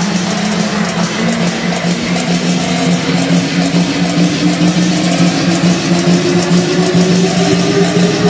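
Music playing loud and steady, with a low droning tone held throughout and a second tone that rises slowly in pitch the whole time.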